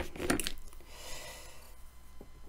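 Quiet room tone with a faint steady hiss, after a brief soft sound in the first half second.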